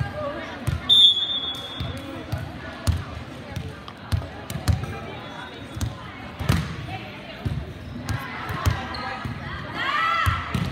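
Volleyballs bouncing and thudding irregularly on a hardwood gym floor, echoing in a large hall. A short whistle blast sounds about a second in.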